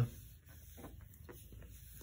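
Faint rustling and a few soft, scattered clicks as hands press a paper shipping label flat against a cutting mat.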